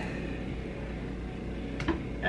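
Steady low hum of indoor room tone, with one short knock near the end.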